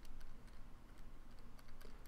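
Calculator keys being pressed: a few faint clicks as a multiplication is keyed in, over a low steady hum.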